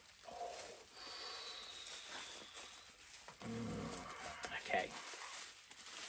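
Plastic bubble wrap rustling and crinkling softly as it is peeled off by hand.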